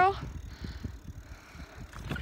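Bicycle rolling slowly over cracked asphalt: an uneven low rumble with many small knocks from the tyres and frame.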